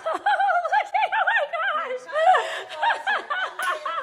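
High-pitched excited laughter: quick runs of short rising-and-falling squeals, several a second, with brief breaks for breath.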